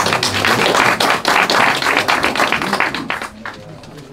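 Audience applause, a dense patter of many hands clapping that dies away about three and a half seconds in.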